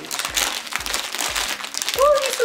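Plastic snack packets crinkling and rustling as they are pulled and torn open, a dense run of crackles.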